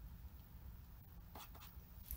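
Faint scratching and tapping of a stylus writing on a tablet, over a low steady hum.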